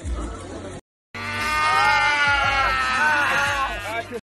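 Several voices letting out long, drawn-out cries together, starting about a second in after a brief cut of silence; before the cut, the tail of talk and chatter.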